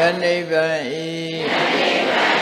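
Buddhist chanting in Pali: a voice held on a steady pitch, dipping briefly about a second in.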